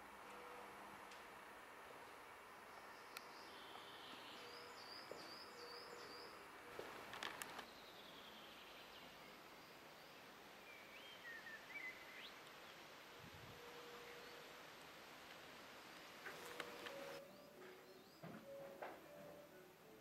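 Faint outdoor ambience with a few brief bird calls, including a run of quick repeated chirps about five seconds in.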